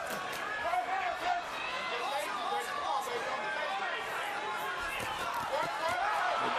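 Boxing arena crowd shouting and cheering, many voices overlapping, with several sharp smacks cutting through.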